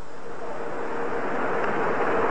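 Steady hiss-like background noise with a faint constant hum running through it, the noise floor of an old lecture recording.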